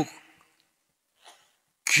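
A man's preaching voice pausing: a word trails off at the start, then a near-silent gap with one faint short breath-like sound about a second in, and speech resumes near the end.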